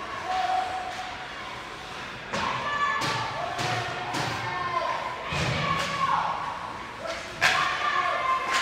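Ice hockey play in an indoor rink: sharp knocks of puck and sticks against the boards and ice several times, the loudest near the end, with indistinct shouting from players and spectators.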